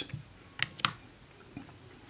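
Stiff game cards being handled and shuffled aside by hand: a few light clicks and taps, the sharpest just under a second in.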